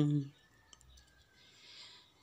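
A man's narrating voice trails off at the start, then a near-silent pause with a faint mouth click and a soft breath.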